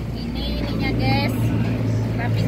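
A steady low motor hum, with voices talking in the background.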